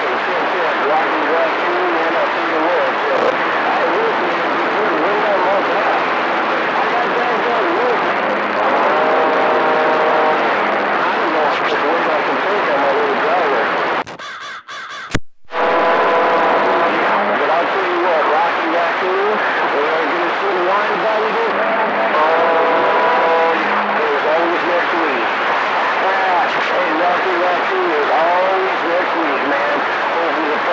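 CB radio receiver on channel 28 playing distant long-range skip signals: loud static with faint, garbled, overlapping voices and a few short clusters of steady whistle tones. About halfway through the signal drops out briefly, ending in a click.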